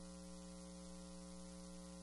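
Faint, steady electrical mains hum with a light hiss, unchanging throughout.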